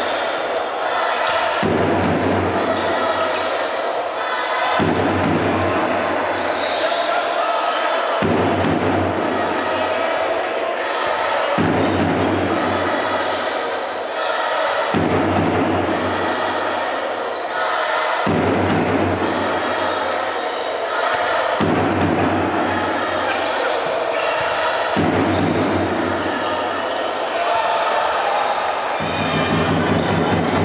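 Basketball game in play: the ball bouncing on the court and crowd voices, over a looping music pattern that repeats about every three and a half seconds.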